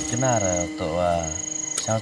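A man speaking, with a high, thin insect trill coming and going in bursts of about half a second.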